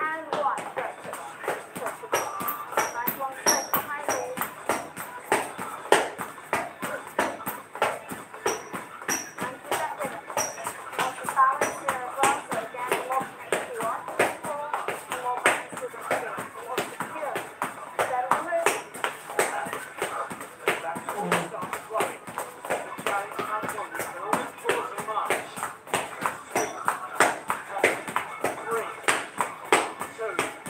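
Quick, uneven footfalls and taps of people exercising on a hard floor, several a second, over an indistinct voice and music.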